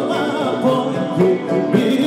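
Live Greek folk band playing a dance tune: clarinet and violin carrying an ornamented, wavering melody over a strummed plucked-string accompaniment, with singing.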